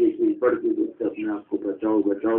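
A man's voice speaking without pause: the preacher's sermon, delivered in Arabic and Urdu.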